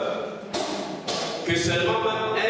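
A man's voice through a microphone and loudspeakers breaks off briefly. Two short sharp sounds come about half a second apart, then the voice starts again near the end.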